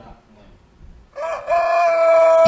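A rooster crowing: one long crow that starts about a second in, rises briefly, then holds on a steady, bright, high pitch. It opens the dawn-themed intro of a morning TV show.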